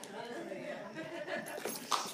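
Faint voices and light laughter from the congregation during a pause in the sermon.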